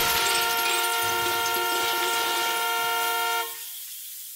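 A car horn sounding in one long, unbroken blast over a hiss of noise, the kind left blaring after a crash. It drops off about three and a half seconds in and trails away.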